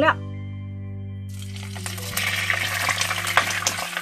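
Soy-sauce dressing poured into hot scallion oil in a wok, sizzling hard from about a second in, with a few clicks of the spatula against the pan later on.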